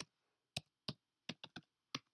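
Computer keyboard typing: about seven separate keystrokes at an uneven pace as numbers are entered into a spreadsheet formula.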